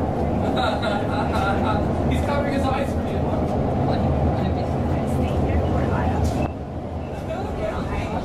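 REM light-metro train running on elevated track: a steady low rumble heard from inside the car, with passengers' voices over it. The rumble eases a little about six and a half seconds in.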